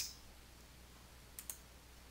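Two faint computer mouse clicks in quick succession about one and a half seconds in, over near-silent room tone.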